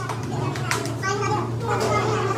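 Several voices talking over one another, with a steady low hum underneath and a short sharp click about two-thirds of a second in.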